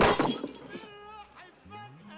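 A sudden crash with glass clattering as a drunk man's head slams down onto a wooden table among the glasses, dying away within about half a second.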